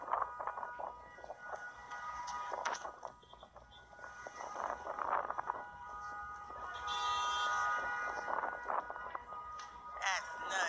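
Background music with steady sustained notes, and a few faint short sounds over it.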